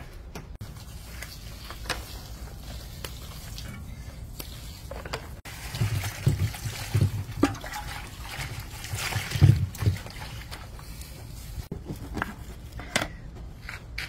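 Water trickling and sloshing as it is poured from a clay pot, with a few light knocks of handling.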